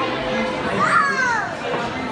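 A young child's high-pitched squeal about a second in, sliding down in pitch, over the steady chatter of a busy dining room.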